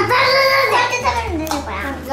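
A young child singing in a sing-song voice, the pitch gliding up and down.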